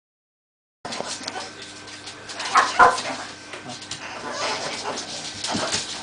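Several Pekingese dogs whining and barking as they beg for food, after about a second of silence; the loudest calls come a little under three seconds in.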